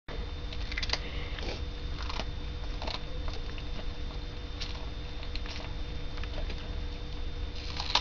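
A cat chewing a piece of raw cucumber: irregular short, crisp crunches every half second or so, over a steady low background hum.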